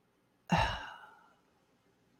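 A woman's short sigh, starting about half a second in and fading away within about half a second.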